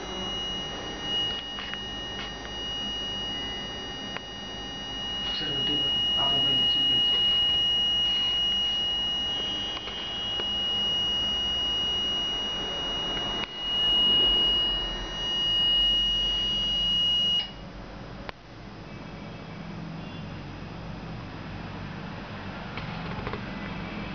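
Continuous high-pitched electronic tone from a buzzer, holding steady and cutting off suddenly about seventeen seconds in.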